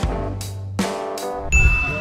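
Edited-in musical sound effect: a ringing, bell-like note struck at the start and again just under a second later, then a low thud with a steady high tone near the end.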